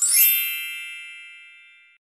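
Logo-reveal sound effect: a single bright, bell-like ding with a shimmering top, ringing and fading for about two seconds before cutting off suddenly.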